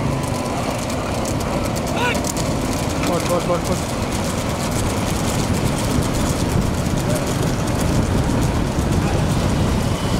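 Steady rumble of a vehicle driving along the road with wind on the microphone, with brief shouts from people about two and three seconds in.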